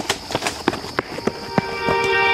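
Running footsteps of sneakers on asphalt, quick even strides about three a second, over a steady high buzz of crickets. A held musical tone comes in near the end.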